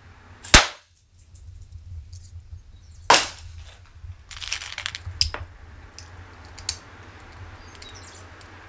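Two shots from a .45 ACP Sig Sauer 1911 pistol, about two and a half seconds apart, each sharp and loud. These are followed by softer clatter and clicks of handling.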